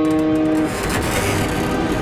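Cartoon roller coaster car sound effects: a held horn-like tone that cuts off suddenly less than a second in, then a steady noise of the car running on its track.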